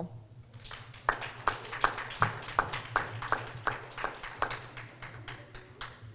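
A small audience clapping: scattered, uneven handclaps, starting about a second in and tapering off near the end, over a steady low hum from the PA.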